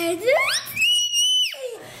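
A young girl's high-pitched excited squeal, rising sharply in pitch, held for about a second, then sliding back down.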